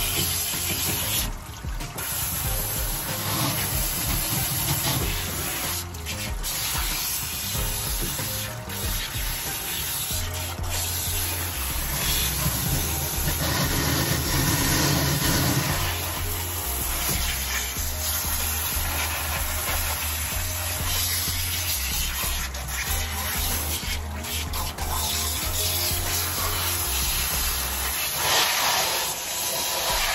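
Water spraying steadily from a hand-held hose sprayer over a lathered cat and into a stainless steel grooming tub, rinsing off shampoo, with background music underneath.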